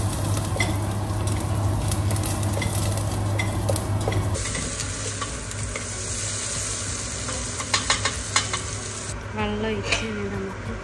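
Diced potatoes and carrots sizzling in a steel pressure cooker pot while a slotted spatula stirs and scrapes them, with sharp taps of the spatula on the pot, several of them together about eight seconds in. A steady low hum runs underneath.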